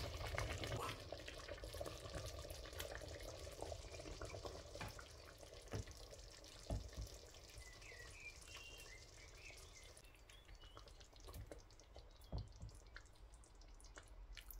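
Thick cooked African breadfruit (ukwa) pottage being transferred from a stainless-steel pot into a ceramic plate: faint wet sloshing and pouring over a soft hiss that thins out about ten seconds in, with a few light knocks against the dishes.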